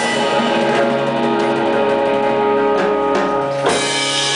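Live jazz organ trio with organ, hollow-body electric guitar and drum kit: the organ holds sustained chords while the drums add scattered hits, with a louder hit near the end.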